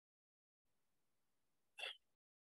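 Near silence, then one short breathy mouth sound from a person near the end.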